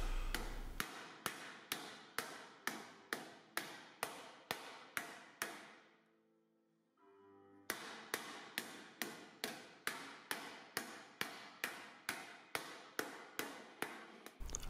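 Light, evenly spaced taps of a round-headed metal-shaping mallet on sheet metal laid over a leather sandbag, about three a second, each with a short metallic ring, driving a slight crown into a fender panel. The tapping stops for about two seconds midway, then resumes at the same pace.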